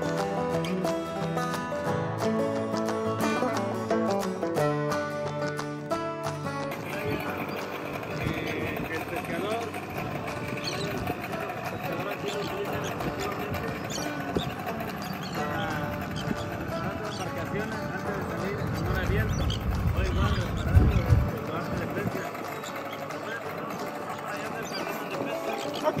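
Background music for about the first six seconds, then the live sound out on the water beside a small outboard skiff: water sloshing, indistinct voices and wind on the microphone, with a louder low rumble of wind about twenty seconds in.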